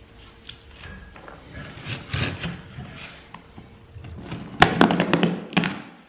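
Utility knife slitting packing tape on a cardboard box: faint scraping at first, then a loud run of sharp clicks about four and a half seconds in as the blade and tape go through.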